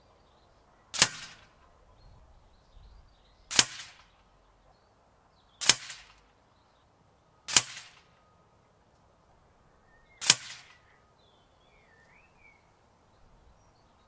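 Five shots from a moderated .22 Daystate Huntsman FAC PCP air rifle, each a sharp crack with a brief tail, fired at uneven intervals of about two to three seconds.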